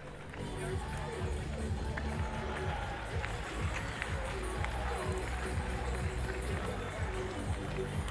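Stadium ambience: music from the public-address system over the murmur of a crowd in the stands.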